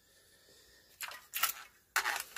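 Light plastic clicks and rattles of a compact cassette being handled and fitted into the open tape compartment of a personal cassette player, two short clusters about one and one and a half seconds in.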